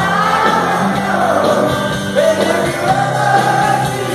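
Live rock band playing in an arena, heard from far up in the stands, with long wavering held notes sung over the band.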